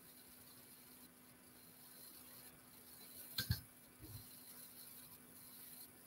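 Near silence, with one faint click about halfway through and a few softer scuffs after it as small jewellery pliers and fine copper wire are handled while a coil is formed.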